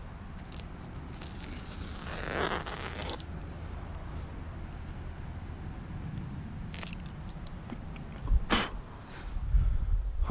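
Utility knife slicing through landscape weed fabric: a rasping, zipper-like cut about two seconds in, lasting about a second. Near the end comes a single loud thump.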